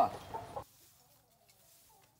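Chicken clucking briefly at the start, then dropping to faint background with a few weak clucks.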